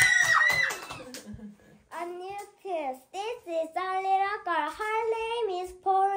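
A young girl's voice: a high, drawn-out vocal sound that ends about a second in, then, after a short pause, reading aloud in a sing-song, chanting way.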